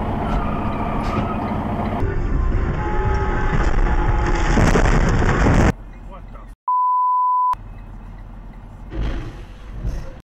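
Dashcam crash-footage audio: loud vehicle and road noise mixed with voices, cut abruptly twice, then a steady one-tone censor bleep lasting under a second about seven seconds in, followed by quieter cab noise and a brief loud swell near the end as trucks collide ahead.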